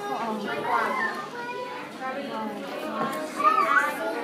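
Overlapping chatter of children and adults, with no single voice clear. Near the end a child's high, wavering voice rises above the rest.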